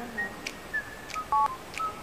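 A single short two-tone mobile phone beep, like a keypad tone, about one and a half seconds in, as the ringing call is answered.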